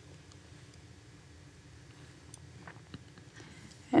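Small metal scissors snipping a small piece of fusible stabilizer: a few faint, soft clicks in the second half over quiet room tone.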